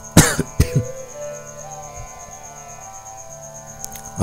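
A loud cough about a quarter second in, followed by a second, shorter cough or throat-clear, over quiet background instrumental music with steady drone tones.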